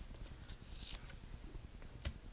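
Faint rustle of a hand sliding across a paper book page, strongest about half a second in.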